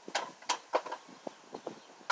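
A handful of short, faint knocks and scuffs, about five over two seconds, from a person moving about and reaching close to the microphone.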